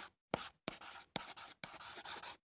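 Pen scratching on paper, a writing sound effect, in a quick series of short strokes with brief gaps: about four strokes of roughly a third to half a second each.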